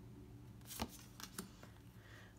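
Tarot cards handled in the hands, a card slid off the front of the deck to the back: a short, faint swish a little under a second in, then a few light ticks of card edges.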